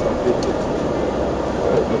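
Steady engine and road noise heard inside a Toyota rally car's cockpit while it drives.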